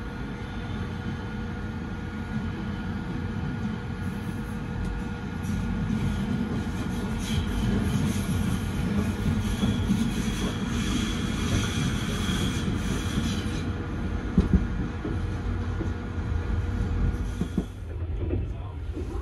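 Passenger train carriage heard from inside as it rolls out of a station: a steady low rumble of wheels on the rails, with a high squeal of the wheels from about 4 to 13 seconds in and two sharp knocks a little after 14 seconds.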